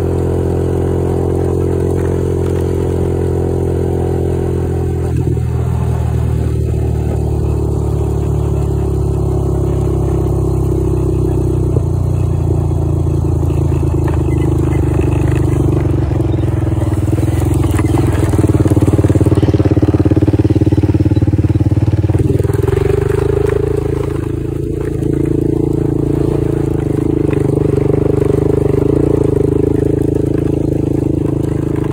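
Honda TRX250EX quad's single-cylinder four-stroke engine running under way. Its pitch shifts about five seconds in, it grows louder around eighteen seconds in, and it eases off briefly at about twenty-four seconds.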